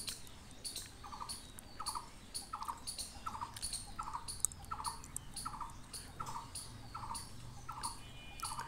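A bird in the surrounding trees repeating a short, slightly falling call over and over, about once every two-thirds of a second, faint, with higher chirps from other small birds scattered between.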